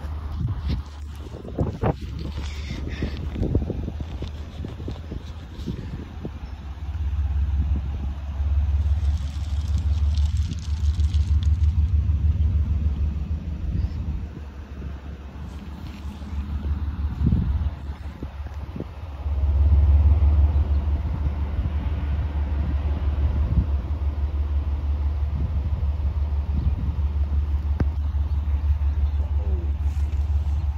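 Freight train of pipe-loaded flatcars and tank cars rolling past: a steady low rumble of wheels on rail with a fine rhythmic clatter, swelling louder twice.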